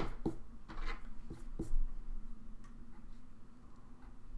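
An eraser rubbing pencil marks off paper in a few short strokes in the first second, with some light knocks, then quieter rustling of hand and paper.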